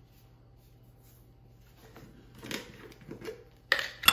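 A jar of coconut oil being handled and a metal spoon scraping out the solid oil, ending in a loud, sharp clink of the spoon near the end.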